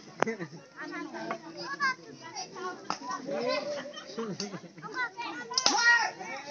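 Many voices of players and onlookers calling and shouting over one another, with one sharp knock just after the start and a louder burst of voices shortly before the end.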